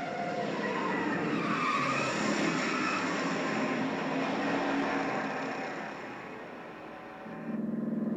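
Movie car-chase soundtrack of a 1968 Dodge Charger and Ford Mustang: V8 engines running and tyres skidding, dying away about six seconds in. Near the end a steady, low engine drone comes in.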